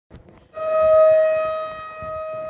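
An electronic alarm siren sounding one steady, unwavering tone with a bright edge, coming on suddenly about half a second in.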